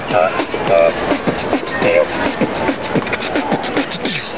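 Human beatboxing: a man produces a fast, steady beat of kick-drum thumps and sharp clicks with his mouth cupped behind his fist, with short sung tones woven between the strokes.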